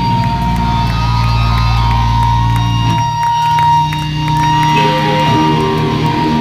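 Live loud rock band playing in a small room: electric guitar, bass and drums. A held low chord breaks off about halfway through, with a few drum and cymbal hits, then guitar notes come back in near the end, over a steady high ringing tone.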